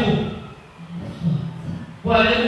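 A voice close to a microphone: a loud phrase trails off in the first half-second, followed by quieter, low-pitched vocal sounds.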